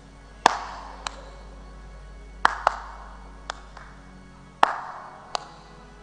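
About eight sharp, isolated cracks at uneven intervals, each ringing briefly in a large hall, over faint sustained background music.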